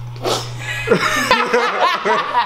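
Several people laughing together. The laughter breaks out a moment in and builds, with overlapping voices.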